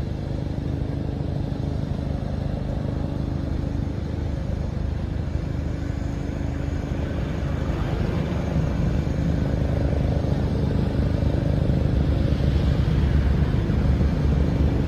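Jet aircraft engines running: a steady rushing noise with a low hum under it, growing a little louder over the last few seconds.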